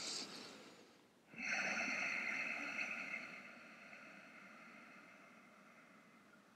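A short breath, then about a second and a half in a long ujjayi breath, hissing through a narrowed throat, that fades away over several seconds.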